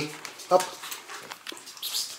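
Three-week-old French bulldog puppies scrambling over their mother on a tiled floor, with scattered faint clicks and a short high-pitched puppy squeak near the end.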